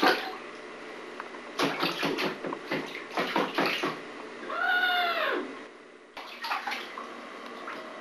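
Bathwater splashing in a run of quick strokes, then a baby's drawn-out squeal that rises and falls in pitch about five seconds in.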